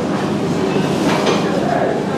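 A person slurping soft strips of gaba cai (tofu skin in gravy) from chopsticks, over a steady rushing background of dining-room noise.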